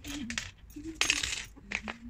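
A short clinking clatter of small hard pieces, about half a second long, starting about a second in, with a woman's soft voice around it.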